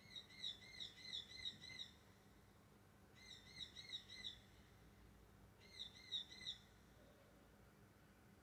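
A bird calling faintly in three short runs of quick, high, wavering chirps, about three or four notes a second, with short pauses between the runs.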